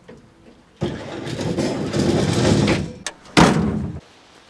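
Pickup truck engine running with a rough rattle for about two seconds, then one sharp, loud bang.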